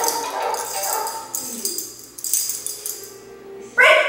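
Metal leash clip and collar tags jingling as a leash is clipped onto a puppy's collar, in clusters over the first two seconds, with a voice starting near the end.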